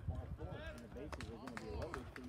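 Indistinct voices of people at a baseball game, calling out and chattering, too far off to make out words. Several sharp clicks come a little past a second in.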